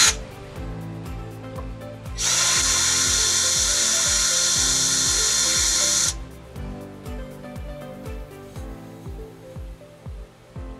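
Cordless drill boring a hole into brick, running steadily for about four seconds from about two seconds in, then stopping suddenly. Background music with a steady beat plays throughout.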